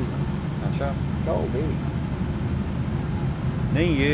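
A steady low rumble like an idling engine, with faint voices in the background. A louder call sounds near the end.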